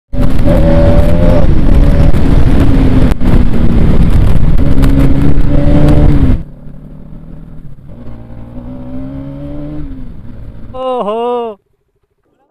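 Bajaj Pulsar NS200 motorcycle riding: engine running under heavy wind noise on the mic for about six seconds. Then it cuts suddenly to a quieter stretch where the engine revs rise and fall. Near the end comes a brief warbling tone.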